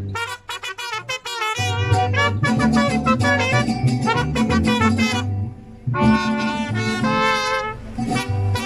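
Mariachi trumpets in harmony over a guitarrón bass playing a song's closing phrase: a run of short, detached chords, then a long held chord with vibrato, a brief break, and a final held chord with vibrato.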